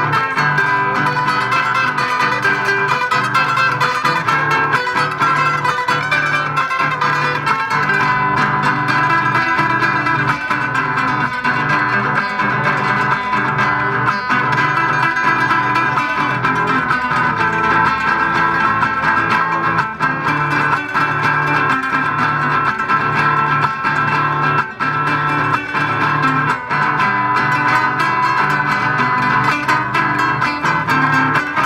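Three acoustic guitars playing a piece together live, picked up through stage microphones and the PA.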